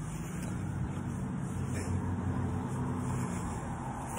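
Low, steady hum of a motor vehicle's engine, growing a little louder in the middle and easing off near the end.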